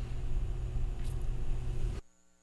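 Steady low rumble of studio room noise with no music playing, and a faint brief hiss about a second in.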